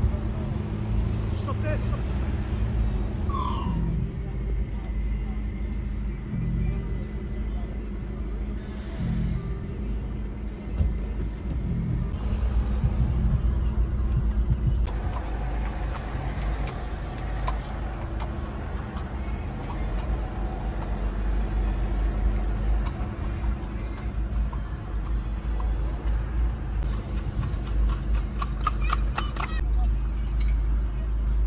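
Low, steady car-cabin rumble from the engine and road while creeping in slow traffic, with muffled talk and music in the background. There is a run of sharp clicks near the end.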